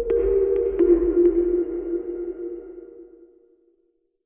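Closing logo sting for an online show: a sustained electronic tone with a few light ticks in its first second or so, fading out over about three seconds.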